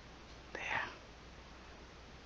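A single short, breathy whisper-like sound from the painter, about half a second in and lasting about a third of a second, over a faint steady hum.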